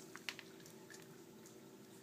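Near silence: faint room tone with a steady low hum and a few faint clicks in the first second.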